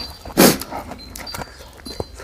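A man's single short, loud puff of breath through pursed lips about half a second in, amid faint eating clicks.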